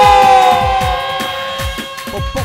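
Amplified Arabic cane wind pipe holding a long note that sags slowly in pitch and fades after about a second, over a steady drone and a bass-drum beat of about two to three thumps a second.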